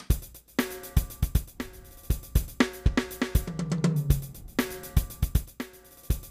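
Sampled drum kit from the Engine 2 virtual instrument playing back a steady beat of kick, snare, hi-hat and cymbal hits, starting at once after a moment of silence.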